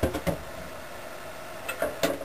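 A metal spoon clinking and knocking against a mixing bowl as batter is stirred: a few quick knocks at the start, then a couple more near the end.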